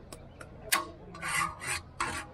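A metal ladle clinking against a large steel cooking pot about two-thirds of a second in, followed by two short rasping scrapes of metal on metal.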